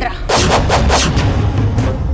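Dramatic TV-serial music sting: a quick run of about five heavy percussive hits over a deep booming rumble, marking a character's entrance.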